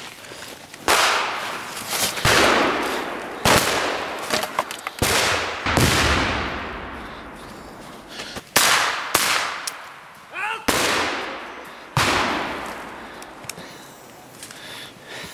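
Battle gunfire and a pyrotechnic blast from a reenactment firefight: about nine loud, sudden bangs at uneven intervals, each followed by a long echo fading through the forest. A short shout cuts in between shots about ten seconds in.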